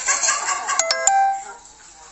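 A bright electronic chime of about three quick notes a little less than a second in, each note ringing on as a steady tone.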